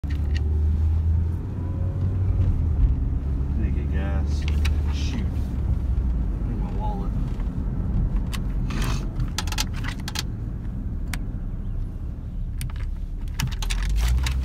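Steady low rumble of a moving car heard from inside the cabin, with scattered clicks and light jingling rattles.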